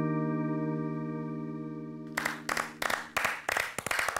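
Final sustained keyboard chord of a soft pop ballad ringing out and slowly fading. About two seconds in it gives way to a run of sharp, uneven hits.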